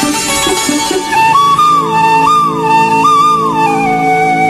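Instrumental intro of a Hindi film song: a flute plays a slurred melody with smooth slides between notes over held chords, coming in about a second in after a short plucked rhythmic figure, and settling on a long held note near the end.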